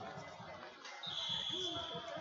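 Wrestlers' bodies and shoes thudding on the wrestling mat as they scramble through a takedown, repeated dull thumps under voices in a large hall. A high steady tone sounds for about the last second.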